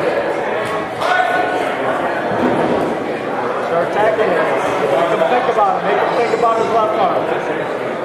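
Several people shouting and talking at once, with no clear words, in a gymnasium hall: coaches and spectators calling out during a grappling match.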